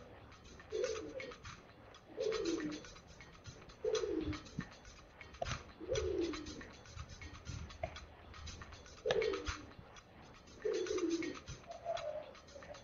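A bird's low cooing calls, each a short note that falls in pitch, repeated about every one and a half to two seconds at an uneven pace.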